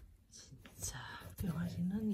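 Soft speech close to a whisper, starting about a second in after a brief quiet moment.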